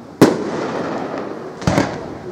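Aerial firework shells bursting: one sharp bang just after the start, the loudest, with a long rolling echo, then two quick cracks close together near the end.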